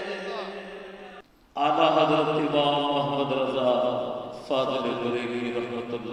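A man's voice singing a naat into a microphone, drawing out long melodic notes. It breaks off briefly about a second in and then carries on.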